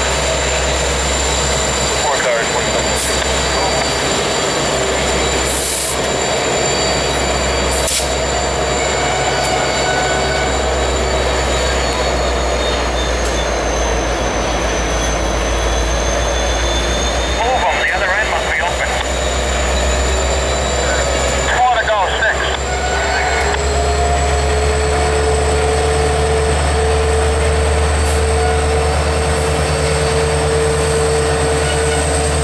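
CSX EMD SD70MAC diesel-electric locomotive running as it moves an intermodal train: a deep steady engine rumble with a high-pitched whine on top. A mid-pitched tone climbs slightly after about 22 seconds.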